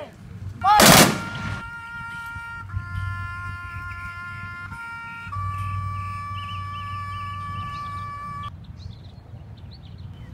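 Rifle volley of a firing-party salute: one loud crack about a second in that rings on briefly. Then a few long, steady musical notes, held and changing pitch twice, until they stop shortly before the end.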